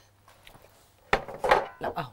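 A ceramic bowl handled on a kitchen counter: a few sharp knocks and clinks coming quickly about a second in, after a quiet start.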